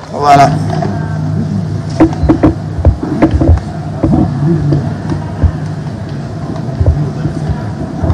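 Steady low hum of an airport terminal, picked up on a handheld microphone while walking, with scattered short knocks and clicks throughout and a brief voice just after the start.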